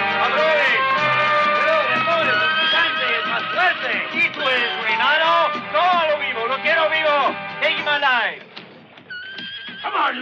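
Film-score music with sustained chords, over which a horse whinnies again and again. The music fades out about eight seconds in, and one more whinny comes near the end.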